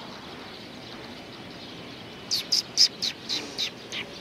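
Eurasian tree sparrows chirping: a quick run of about seven short, high chirps starting a little past halfway, over steady low background noise.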